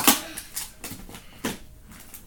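Small hands pushing and pulling at a taped cardboard shipping box: a sharp knock at the start, then a few softer taps and scrapes of cardboard.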